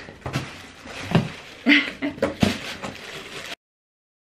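Cardboard box flaps being pulled open and handled: a run of irregular knocks, scrapes and rustles. The sound cuts off suddenly to silence near the end.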